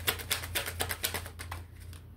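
Tarot cards being shuffled by hand: a quick run of crisp card clicks, roughly eight to ten a second, that thins out near the end.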